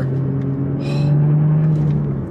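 Toyota GR Supra's turbocharged 3.0-litre inline-six pulling in gear with the six-speed manual, heard from inside the cabin: a steady engine drone whose pitch rises slowly as the revs climb, then falls away near the end as the revs drop.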